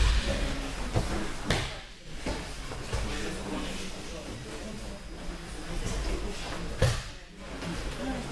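Thuds of judoka being thrown and landing on tatami mats, several separate impacts with the loudest right at the start and another strong one near the end, over the background murmur of a training hall.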